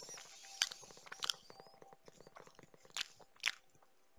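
Faint, irregular lip smacks and mouth clicks close to a headset microphone, with a few sharper clicks scattered through.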